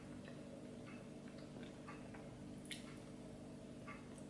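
Faint, scattered little clicks and smacks of a mouth chewing a soft chocolate cake slice, over a low steady hum.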